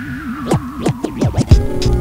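Hip hop instrumental intro: a wavering tone runs under a quickening run of record scratches, about four strokes, then the beat drops in with a heavy low hit about a second and a half in.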